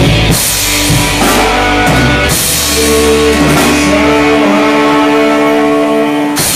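Live blues-rock trio playing: electric guitar, electric bass and drum kit. About two seconds in, the cymbals drop out and the electric guitar holds long sustained notes over the bass.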